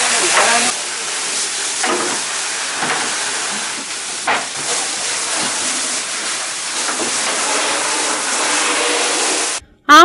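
Fire hose jet of water spraying onto a burnt-out autorickshaw, a steady hiss that stops abruptly just before the end.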